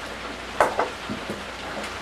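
Chicken wings frying in a deep fryer of hot peanut oil: a steady sizzle, with a single light knock about half a second in and a couple of faint ticks after it.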